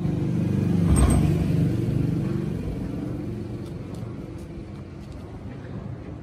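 A motor vehicle's engine rumbling close by, loudest about a second in and then slowly fading away.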